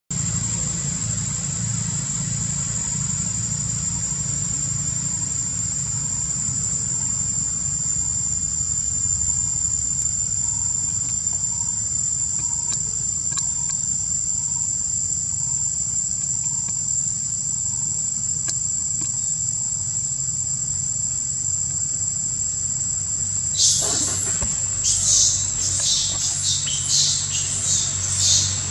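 Steady, high-pitched drone of insects, one unbroken tone, over a low steady rumble. Near the end a quick run of short, louder high-pitched sounds breaks in.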